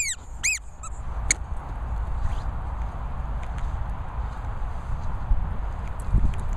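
A rubber squeaky toy squeaking: four or five short, high squeaks in quick succession in the first second and a half, followed by a steady low rumble.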